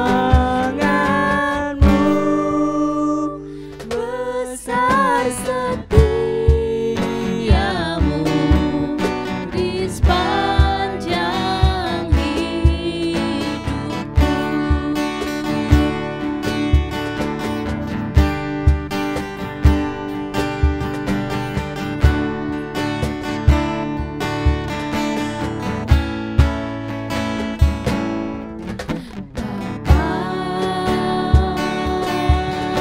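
A song performed with a woman singing lead and a man singing with her, over strummed acoustic guitar and a steady low beat.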